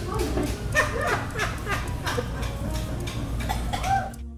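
Wet, noisy chewing and slurping as a man gnaws on a prop severed arm, with many short clicks and brief grunting mouth noises over a steady low hum.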